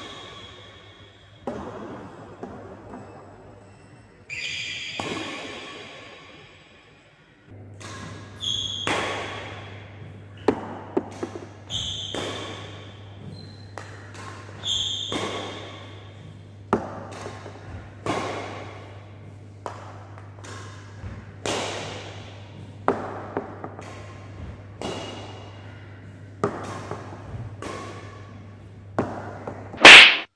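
Badminton racket strikes on a shuttlecock, one every second or so in a rally, each echoing in a large indoor hall, some with a short high ring. A steady low hum comes in about a quarter of the way through.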